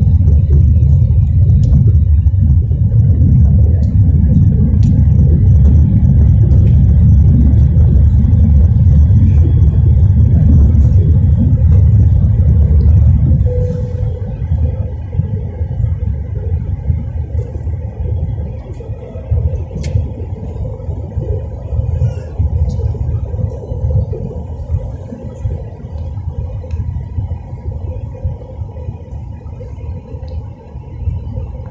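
Cabin noise inside an easyJet Airbus A320-family airliner on descent: a loud, steady low rumble of engines and airflow. About halfway through it drops sharply to a lower level and carries on.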